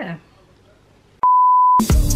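A single loud, steady, pure beep tone at about 1 kHz, lasting about half a second. It starts and stops abruptly about a second in and is added in editing, like a censor bleep or transition beep. Music starts right after it at the end.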